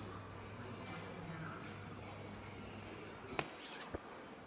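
Room tone in a large indoor hall: a steady low hum under faint background noise. Near the end the hum drops away and two sharp clicks come from the phone being handled as it is turned round.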